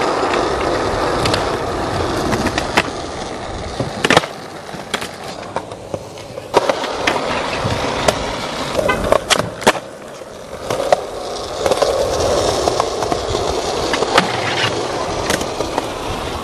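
Skateboard wheels rolling over rough concrete, with repeated sharp clacks as the board is popped and lands.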